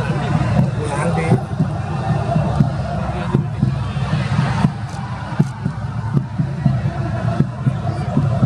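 Live match sound from a football pitch in a mostly empty stadium: indistinct shouts and calls from players and scattered spectators, with short thuds at irregular intervals.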